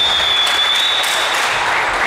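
Referee's whistle blown in one long, steady, high blast lasting about a second and a half, over applause from spectators in a sports hall, as a goal is given.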